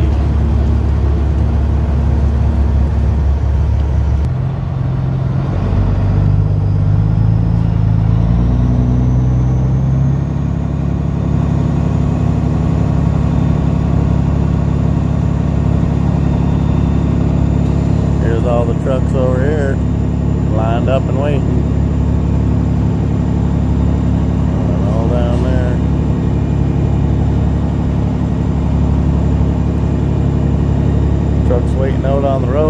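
Straight-piped Caterpillar diesel of a Peterbilt semi running as the truck pulls forward, its pitch climbing and dropping through a couple of gear shifts between about four and ten seconds in, then settling to a steady low-speed run.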